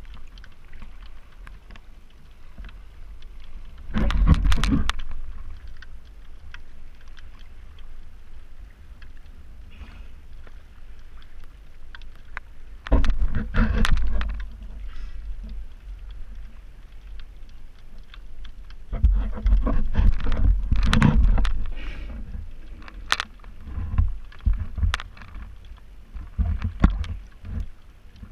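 Sea water sloshing and splashing against an action camera held at the surface, a steady wash with irregular loud surges about four, thirteen and twenty seconds in and several shorter splashes near the end.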